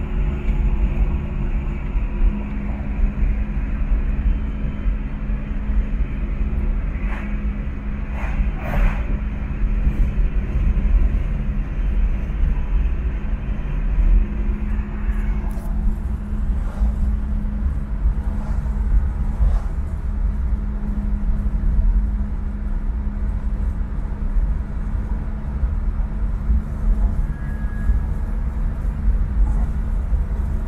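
A car cruising at highway speed, heard from inside: a steady low engine and road rumble with a constant hum, and a few light knocks. About halfway through, the higher hiss drops away and the rumble carries on.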